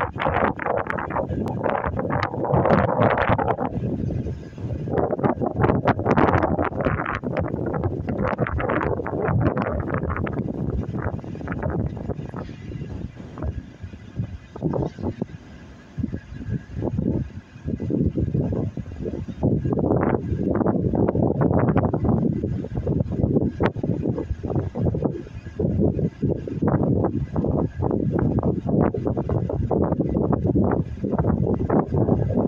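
Wind buffeting the phone's microphone in gusts, a loud, uneven rumble that surges and eases with crackling spikes.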